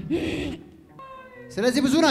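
A woman's high, wavering vocal cries picked up through a handheld microphone, loudest in the last half second, with a faint steady pitched tone about a second in.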